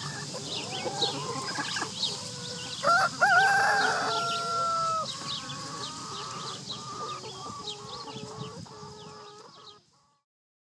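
Chickens clucking, with a rooster crowing once about three seconds in; the crow is the loudest sound and lasts about two seconds. Short high chirps run throughout, and the sound fades out near the end.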